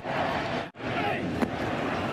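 Ballpark broadcast sound of Zack Greinke pitching: a steady stadium crowd hubbub with a short grunt from the pitcher on his delivery. There is a brief drop-out about two-thirds of a second in where two clips are spliced, and one sharp crack about a second and a half in as the pitch reaches the plate.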